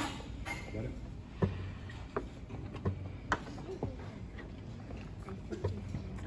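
Chess pieces set down on a board and chess clock buttons pressed in turn during a fast game: about half a dozen short sharp knocks, irregularly spaced, over a murmur of children's voices.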